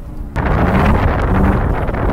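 BMW E36's M52 straight-six running hard as the car drifts on snow, heard from outside with heavy wind noise on the microphone. It cuts in abruptly about a third of a second in, after a quieter hum.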